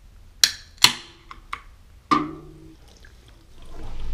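Sharp clicks and knocks of an aluminium energy-drink can being handled and opened: two crisp clicks about half a second apart, a few small ticks, then a heavier knock about two seconds in. Music fades in near the end.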